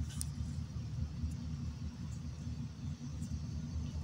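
A steady low rumble of background noise, with a few faint ticks.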